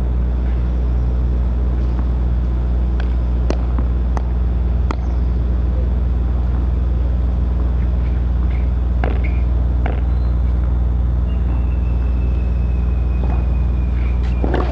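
Steady low rumbling hum that dominates throughout, with a few sharp, isolated taps scattered through it.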